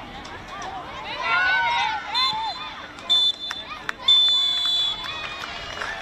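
Referee's whistle blown three times, two short blasts and then a long one: the full-time signal. Players' shouts come just before the whistles.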